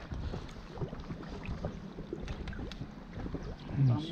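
Raft paddles dipping and splashing in river water, over a low wind rumble on the microphone, with a short louder low sound near the end.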